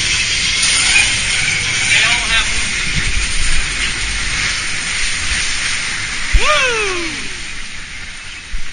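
Log-flume water rushing steadily around the log boat in its trough. About six and a half seconds in, a knock is followed by a voice calling out with a falling pitch.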